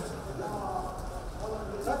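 Many men's voices overlapping in a large hall, a continuous busy murmur with no single voice standing out.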